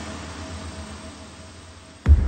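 Street traffic ambience with a low hum, fading away steadily after a louder passage.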